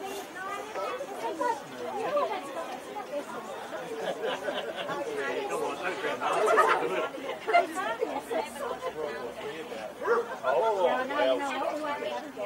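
Overlapping chatter of several people talking at once, with a dog barking about halfway through.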